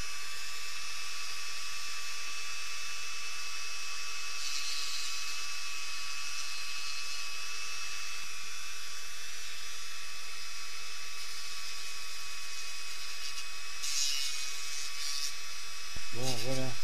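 Dremel rotary tool running at high speed with a steady high whine, grinding back the door edge of a 1/43 scale model car body. The grinding gets briefly rougher twice, around four seconds in and near the end.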